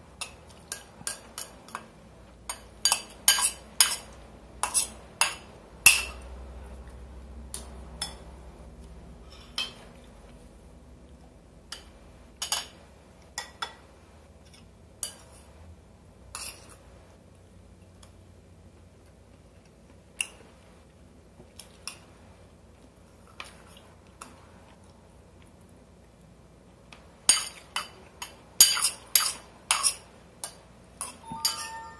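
Metal spoon clinking and scraping against a ceramic rice bowl while eating, in quick runs of clinks early on and again near the end, with scattered single clinks between.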